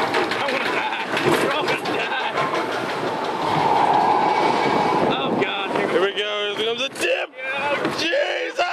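Spinning roller coaster car rolling and rattling along its steel track, with a fast clattering run about six seconds in, as it heads up the incline; people's voices over it.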